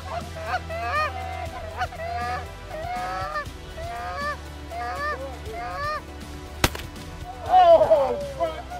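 Canada goose honks and clucks in quick succession, about two a second, growing louder in the last second. A single sharp crack cuts in shortly before the end.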